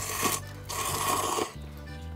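A man slurping noodles in two pulls, a short one and then a longer one, over background music.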